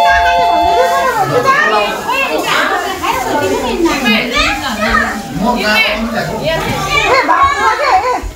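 Many children's voices at once, shouting and chattering as they play. At the start an electronic chime of steady tones sounds and stops about a second in.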